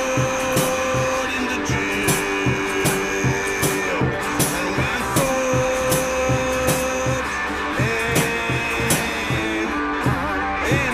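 Instrumental break in a band's song: a steady drum beat under long held melodic notes that change pitch every second or so, with no singing.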